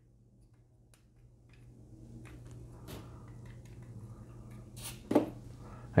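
Faint clicks and rubbing of a small hard-plastic toy cage being pulled apart and fitted back together by hand, after a near-silent start.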